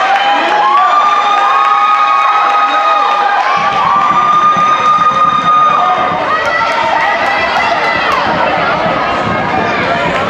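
Cheerleaders chanting a cheer in a run of long, held, high-pitched calls over gym crowd noise. A lower crowd rumble joins about a third of the way in.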